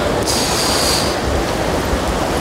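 Fast-flowing Ganges water rushing past the ghat steps, a loud steady roar. A brief high-pitched squeal sounds over it about a quarter second in and lasts under a second.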